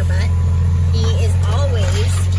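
A vehicle engine runs steadily with a loud, even low hum while the vehicle moves, and a voice with gliding pitch sounds over it.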